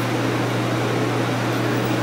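Steady low hum over an even hiss of room noise, with no other events.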